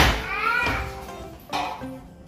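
A sharp click at the very start, then a young child's brief high-pitched vocal sound with rising and falling pitch, over background music.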